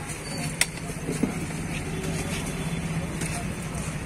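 Roadside street noise: a steady low hum of road traffic with faint voices in the background. Twice, a sharp clink of a steel serving spoon against steel pots, about half a second and just over a second in.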